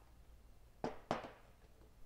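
Two short puffs of breath, about a quarter second apart, blown at a sound-trigger module to switch off an LED 'birthday candle'.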